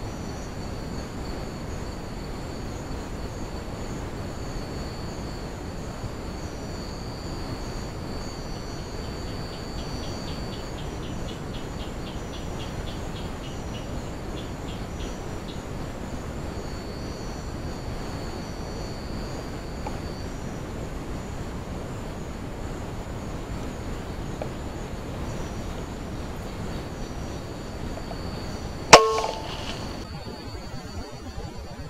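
Night insects calling steadily over a background hiss, with a fast ticking trill for several seconds. Near the end comes one sharp, loud shot from a PCP air rifle, with a short ringing tail.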